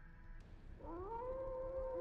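A long animal-like howl from the anime's soundtrack. It rises in pitch a little under a second in and is then held on one steady note.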